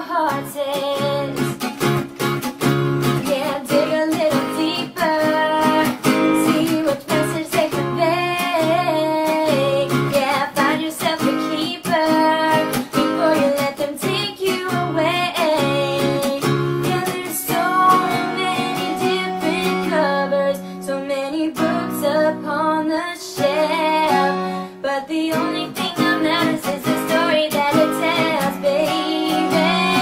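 A woman singing a pop song with strummed acoustic guitar accompaniment.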